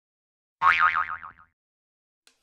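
Cartoon "boing" spring sound effect: one wobbling, springy tone that starts about half a second in and dies away within a second.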